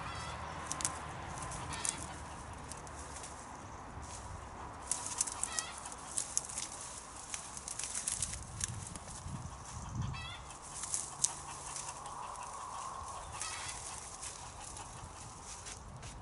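Rustling and crackling of plant stems and foliage as annual flowers are pulled up by gloved hands, with a few short bird calls in the background.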